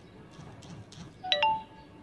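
Faint handling of a plastic enclosure lid being swung open, then about a second and a quarter in a short electronic chime of two or three quick notes, the last one higher and held briefly.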